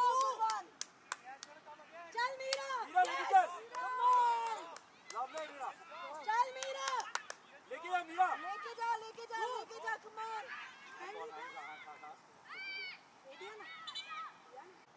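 High-pitched voices of players and onlookers calling and shouting across a football pitch during play, overlapping and indistinct. A few sharp ticks sound in the first couple of seconds.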